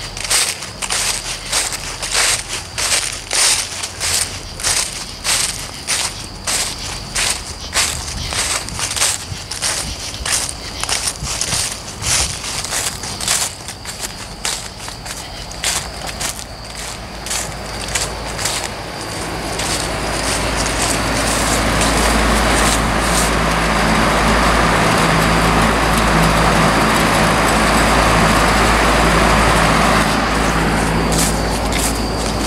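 Footsteps crunching through dry fallen leaves on grass, about two steps a second. About two-thirds of the way through they give way to the steady rushing hum of a window-mounted fan running, which grows louder as it comes closer.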